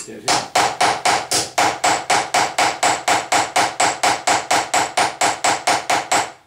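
Small hammer peening a rivet head to pin Celeron handle scales onto a knife: a rapid, even run of metallic strikes, about four or five a second, each with a short ring.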